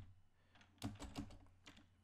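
Computer keyboard typing: a handful of quick keystroke clicks in the second half, after a quiet start.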